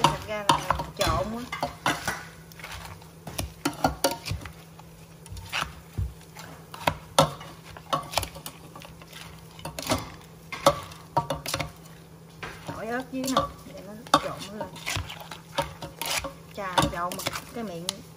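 A white pestle pounding and pressing shredded green papaya and salted crab in a stainless steel bowl, used in place of a mortar, while a spoon tosses the salad: irregular knocks and clinks against the metal bowl with wet mashing between them.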